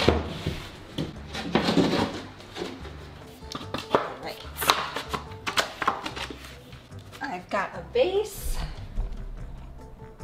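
Background music, over which a plywood board scrapes and knocks a few times as it is worked into place against floor tile.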